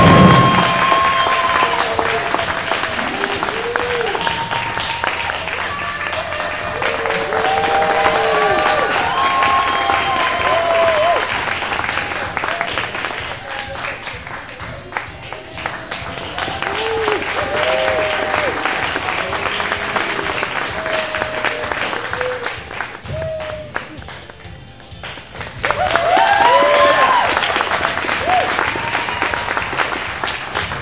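Audience applauding, with shouts and whoops from the crowd over the clapping. It eases off briefly near the end, then swells again.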